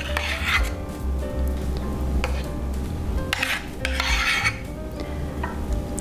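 Metal spoon scraping thick red-wine cream out of a small saucepan, in a few separate scraping strokes, the longest about midway, over soft background music.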